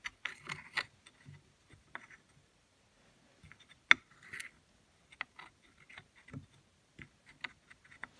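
Light scattered clicks and taps of metal carburetor plates and parts being handled and fitted together on a Tillotson HD carburetor, with one sharper click about four seconds in.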